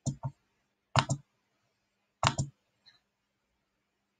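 Clicking at a computer: three quick double clicks spaced about a second apart, then a faint tick.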